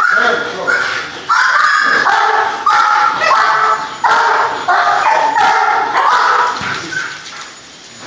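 A dog giving a run of high-pitched whines and yips, one after another, each cry starting abruptly; they die away near the end.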